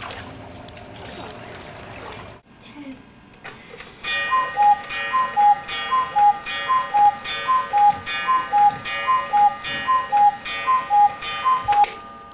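Mechanical cuckoo clock striking the hour: about ten two-note "cu-ckoo" calls, high note then low, a little under one a second, each with the airy puff of the clock's bellows. A few seconds of low background hiss come before it.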